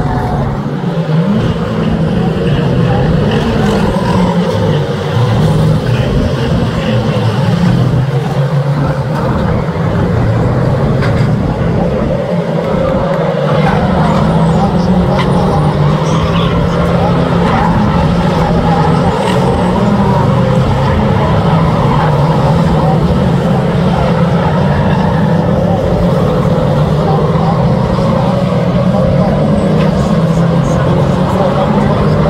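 Several 2-litre saloon stock cars racing around the oval, their engines running continuously and overlapping, with revs rising and falling.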